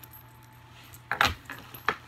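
A fabric diaper bag being handled and lowered, with its metal zipper pulls and hardware clinking and jingling in two short bursts, about a second in and again near the end.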